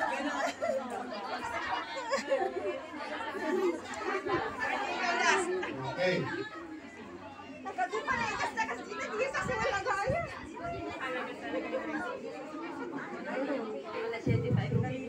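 Many voices talking over one another: the steady chatter of a crowd of party guests, echoing in a large hall.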